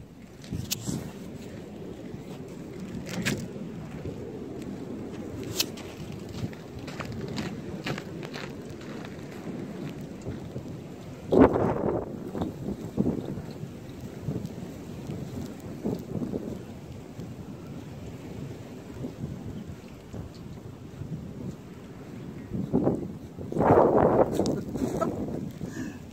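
Footsteps crunching through snow, with rustling and handling noise on a phone's microphone. A louder thump comes about halfway through, and a cluster of louder bumps near the end.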